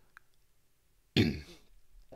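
A man clearing his throat once, a short, sharp burst about a second in.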